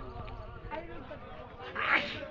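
Faint voices of people talking in the background, with one short loud burst shortly before the end.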